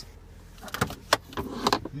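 A car's glove compartment being opened: a few short clicks and knocks from the latch and plastic lid, with rustle from handling, a sharp click a little past the middle.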